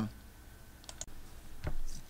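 A few faint, sharp clicks about a second in, and another near the end.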